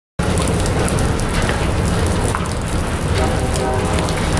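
CSX freight train's boxcars rolling past: a steady rumble and rattle of wheels on rail, with scattered clicks.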